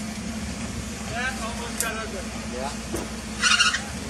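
Jeep Wrangler engine running low and steady as it crawls over logs and brush. A loud, harsh screech of scraping or tyre slip cuts in near the end.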